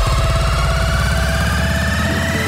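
Electronic dance track in a build-up: a synth riser climbs steadily in pitch over a held bass, with the fast pulsing bass of the moment before giving way at the start.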